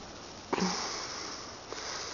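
A person sniffing twice through the nose, about a second apart. The first sniff is louder and longer.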